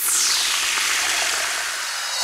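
Whoosh sound effect for a logo animation: a sudden rush of noise whose hiss sweeps downward in pitch over the first second, then holds as a steady rushing sound.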